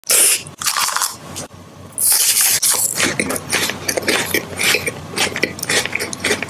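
Close-miked biting and crunching of a KitKat Milk Tea wafer bar, then chewing it with many crisp crackles.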